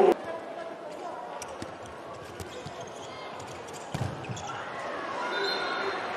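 Handball court sound in a large indoor hall: a handball bouncing on the court floor and a few sharp knocks, the strongest about four seconds in. Faint voices in the hall grow louder near the end.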